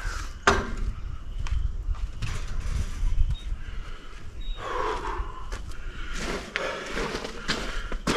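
Footsteps on gravel and dirt as a person walks away and comes back, with scattered short knocks, a sharp click about half a second in, and a low rumble underneath.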